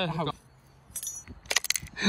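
A held, sung note fades out at the very start. Then come a few light metallic clicks and clinks, one about a second in and a quick cluster near the end, as a screwdriver works on the small metal parts of a nitro RC car's engine.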